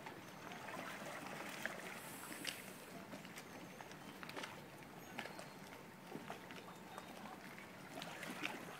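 Faint lapping of harbour water around small boats, with scattered light knocks and clicks.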